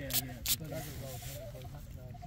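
Two quick squirts of a hand spray bottle, rinsing mud off a freshly dug coin, under faint voices.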